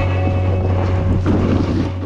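Wind rushing over the microphone as a snowboard rides fast through deep powder, with a steady low hum underneath.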